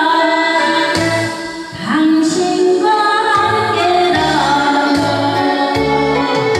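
A woman singing a Korean pop song into a microphone over an instrumental backing track with a bass line, with a short break between phrases about two seconds in.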